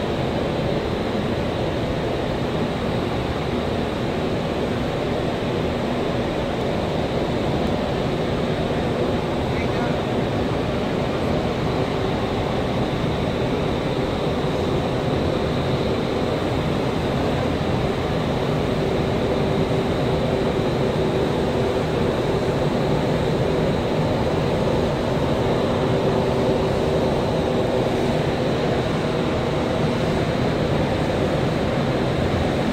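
Indoor skydiving vertical wind tunnel running: a steady, even rush of air with a constant fan hum beneath it.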